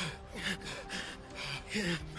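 Men panting and gasping for breath in quick, short breaths, about two a second, winded after a hard run.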